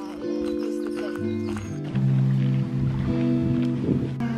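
Background music: held chords over a bass line that comes in about a second in and steps lower about two seconds in.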